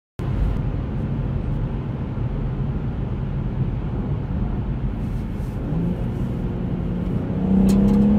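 In-cabin drone of a BMW M140i's B58 3.0-litre turbocharged straight-six and its tyres cruising at about 90 km/h. Near the end the engine note steps up and starts to climb as the car begins to accelerate.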